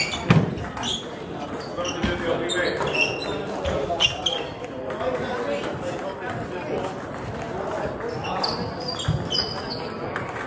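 Table tennis ball knocking off bats and the table a few times, the loudest knock just after the start and another about four seconds in, over steady background chatter from players at other tables.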